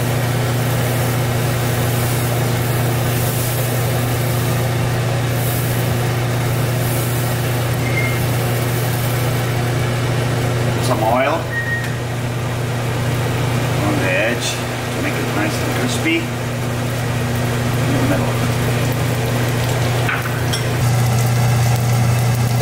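Steady low hum of a kitchen exhaust fan over a stove where a dosa is cooking in an oiled pan. A few light clinks and scrapes of a spoon against a cup and bowl come about halfway through and again near the end.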